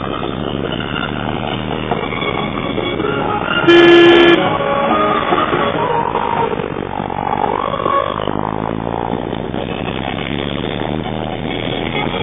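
Music playing steadily, cut through about four seconds in by one loud horn blast lasting a little over half a second, from a truck on the road passing close by.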